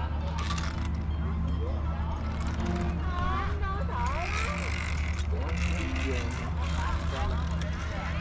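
Indistinct chatter of several people in the background, with no clear words, over a steady low hum.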